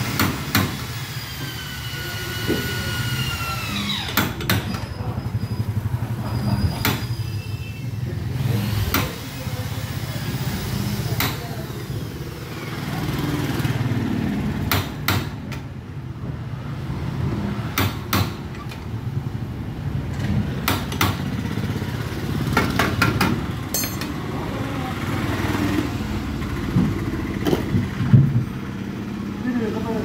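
Slide-hammer dent puller clanking as its sliding weight is slammed against the stop to pull a dent out of an auto-rickshaw's rear body panel. The sharp metal knocks come every few seconds, some in quick pairs, over a steady low hum.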